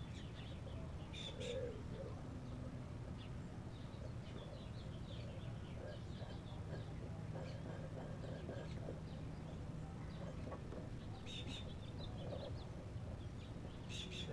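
Birds chirping faintly and intermittently outdoors, with two brighter bursts of calls, one about a second and a half in and one near the end, over a low steady background hum.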